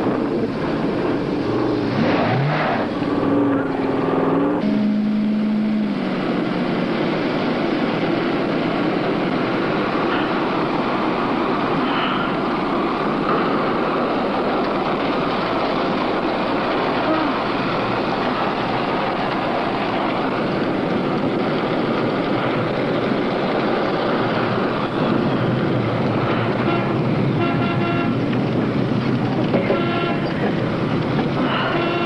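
A car engine and tyre noise run steadily at speed. A horn sounds a couple of seconds in and holds for a few seconds. Near the end a horn blares again.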